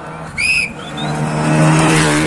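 A rally car's engine running at high revs, growing louder from about a second in as the car closes in at speed on the gravel stage. A brief shrill note sounds about half a second in.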